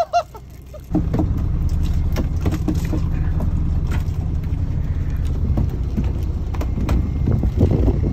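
Steady low rumble of the phone being moved and handled, starting suddenly about a second in, with scattered knocks and rattles as the netted kingfish are brought into the boat.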